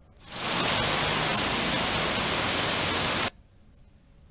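Heavy rain falling, a loud steady hiss that swells in quickly and cuts off abruptly about three seconds later.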